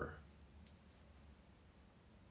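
The end of a spoken word dies away, then near silence: room tone with two faint clicks about half a second in.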